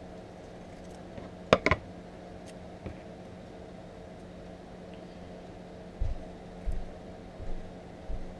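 Workbench handling sounds over a steady low hum: two sharp clicks close together from the scissors about a second and a half in, then a few soft low thumps near the end as masking tape is worked onto a small plastic slot car body.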